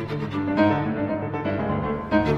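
Classical chamber music from a piano trio: cello and piano, with violin, playing a slow, sustained contemporary piece.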